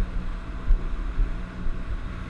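A game-fishing boat's engine running steadily under way, a low even hum, with wind buffeting the camera microphone.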